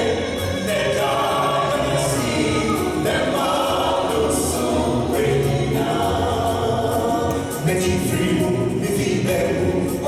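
A small mixed group of singers singing a gospel song together in harmony through microphones, steady and unbroken.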